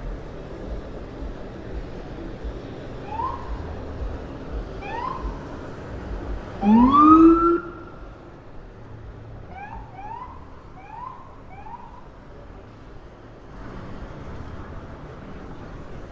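Police car siren giving short rising chirps over street traffic. There are two single whoops, then one loud, longer whoop that rises and levels off, then four quick chirps in a row.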